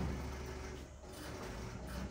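Low rumble over the steady background noise of a post office lobby, the rumble heaviest in the first second.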